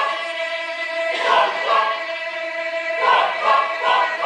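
Mixed choir of men's and women's voices singing a cappella: long held chords, then quicker rhythmic sung notes from about three seconds in.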